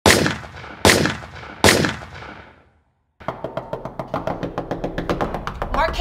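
Three heavy cinematic impact hits under an opening title card, less than a second apart, each ringing out in a long fading tail. After a brief silence comes a fast, even run of knocks, about six a second, over a low rumble.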